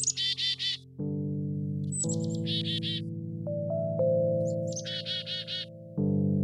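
Black-capped chickadee calling three times, about two seconds apart, each call a brief high note followed by a quick run of four or five repeated notes. Soft keyboard music plays underneath.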